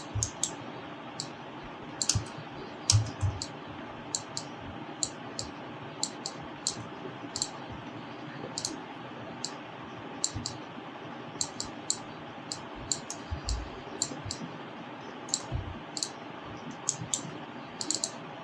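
Computer mouse clicks and keyboard key presses at an irregular pace while 3D models are moved and rotated, over a steady background hiss and hum, with a few dull low thumps.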